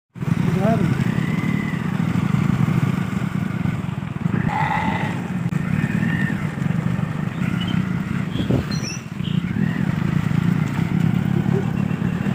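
Motorcycle engine running steadily, with indistinct voices over it.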